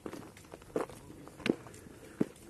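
Footsteps of a person walking on a dry, stony dirt trail, at an even walking pace of roughly one step every 0.7 seconds.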